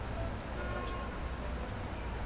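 Steady low rumble of city traffic under an even background hiss.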